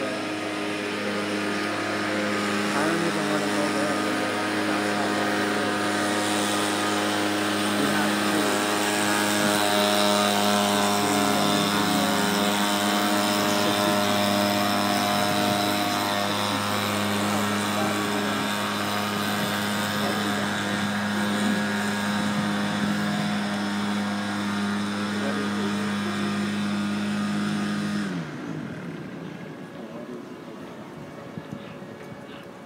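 A large engine running steadily nearby with a low, even hum. Near the end it winds down in pitch and stops.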